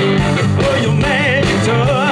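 Live blues band playing: electric guitars and drums, with a lead vocal line wavering in vibrato above them.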